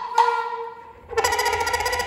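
Free-improvised jazz trio of soprano saxophone, cello and drums: a held pitched note fades to a brief lull about halfway through, then a dense passage of rapid, fluttering pulses comes in loudly.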